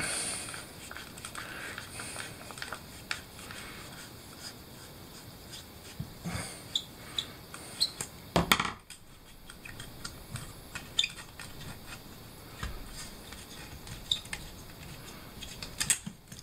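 Screwdriver backing wood screws out of a small wooden block, with scattered light clicks and ticks of the metal tool and the handled wood. There is one louder knock about eight and a half seconds in.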